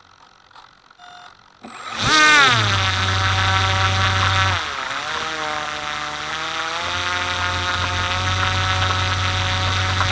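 Faint repeated beeps, then, about two seconds in, the electric motor and propeller of a radio-controlled model start up abruptly, the pitch falling quickly before settling into a steady whine. The pitch dips briefly about halfway through and then holds. The motor runs through an electronic speed controller the uploader calls faulty.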